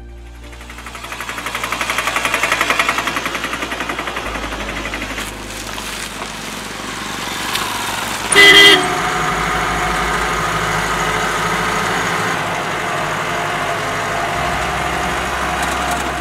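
Road traffic: a motorcycle engine pulses past close by, swelling and fading over the first few seconds, then steady vehicle running noise with one short, loud horn honk about halfway through.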